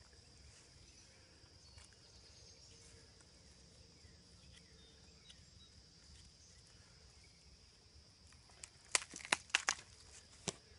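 Steady high chirring of insects in the field, with a quick cluster of about half a dozen sharp clicks and snaps near the end.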